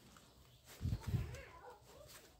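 Plastic toy pistol being handled and its slide worked: two dull knocks close together about a second in, with a faint wavering whine underneath.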